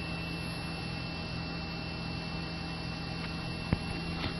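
Steady electrical hum from powered-up cockpit avionics, with a thin high whine held above it. A single faint click comes near the end.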